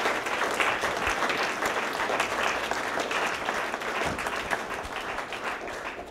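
Audience applauding, a steady patter of many hands clapping that begins just before and tapers slightly near the end.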